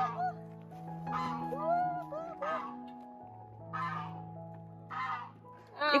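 Soft background music with long held notes, over which geese honk several times, a harsh call about every second and a half.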